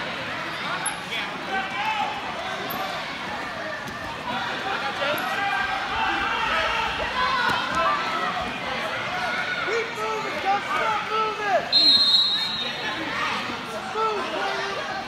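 Spectators' voices shouting and talking over one another at a youth wrestling bout, with a brief high whistle-like tone about twelve seconds in.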